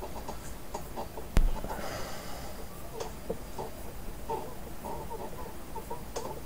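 Quiet handling sounds of hands pressing and rubbing painter's tape down onto a CNC machine's metal table, with one sharp knock about a second and a half in.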